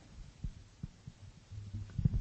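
A few soft, low thumps in a pause between speakers, then a low hum near the end.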